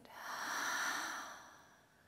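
A woman's long exhaled breath sighed out through the mouth during a deep-breathing exercise. It swells over the first half second and then fades away over about a second.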